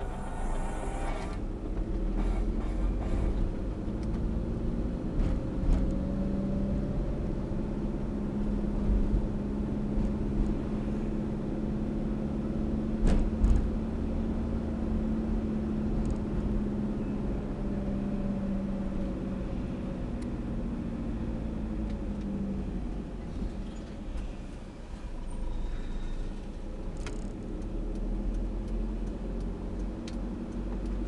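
Car engine and road rumble heard from inside the cabin while driving. A steady engine drone swells slightly and then fades away over about twenty seconds, and there is a single sharp knock about thirteen seconds in.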